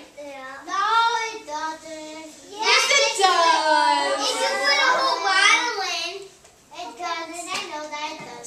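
Children's high-pitched voices talking and calling out with no clear words, loudest from about three to six seconds in.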